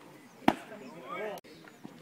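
A single sharp crack on the baseball field about half a second in, followed by voices calling out.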